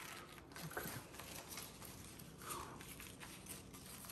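Faint rustling and crinkling of a paper drape and packaging being handled, with a spoken "okay" about a second in.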